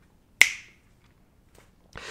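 A single sharp snap about half a second in, with a short ringing tail.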